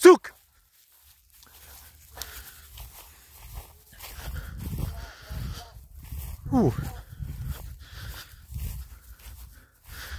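Uneven low rumble of steps and handling noise from a phone carried through a field. About six and a half seconds in comes one short vocal sound that falls steeply in pitch.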